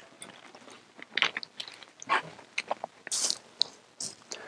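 Plastic water bottle crinkling and crackling in a series of short, irregular clicks as a man drinks from it and handles it.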